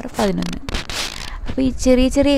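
A woman speaking in Malayalam, with a short hissing, rustling noise about a second in.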